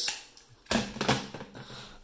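Handheld Dymo embossing label maker being squeezed: a sharp crunchy click a little over halfway into the first second, followed by a few smaller clicks as the tape is punched.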